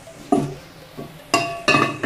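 Cookware clinking: several sharp knocks on a frying pan with a short metallic ring, the loudest two in the second half.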